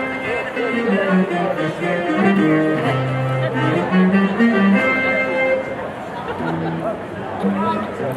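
Live rock band playing a 1960s–70s oldies cover, amplified through stage speakers: a bass line stepping between notes under guitar and keyboard melody and drums.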